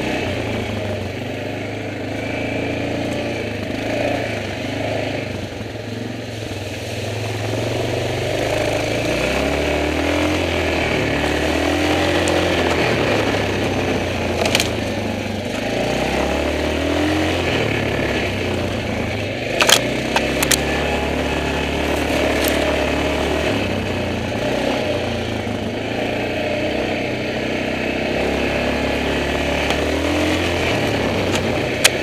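Yamaha Grizzly 450 ATV's single-cylinder engine running on a dirt trail under changing throttle, its pitch stepping up and down. A few sharp knocks come about fifteen seconds in and again around twenty seconds in.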